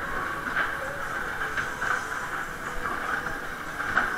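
Waltzer fairground ride running: a steady rumbling rush from the car rolling and spinning on the ride's track, with a few brief louder swells.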